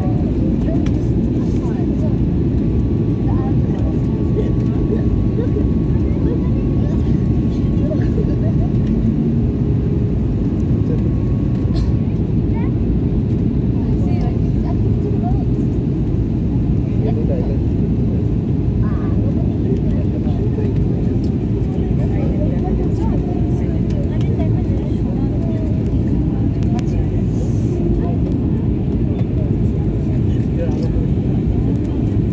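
Steady roar of engine and airflow noise inside a jet airliner's cabin as it descends to land.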